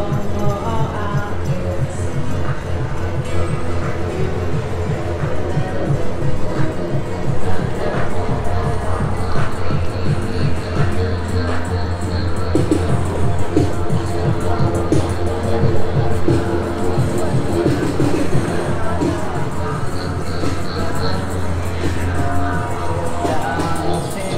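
Music with a steady beat playing in a busy street, with crowd noise and passing voices.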